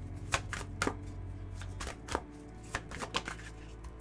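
A deck of tarot cards being shuffled by hand: a run of irregular soft card snaps and flicks, a couple a second.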